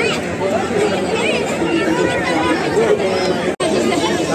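Crowd chatter: many people talking over one another in a packed, jostling crowd. The sound cuts out for an instant about three and a half seconds in.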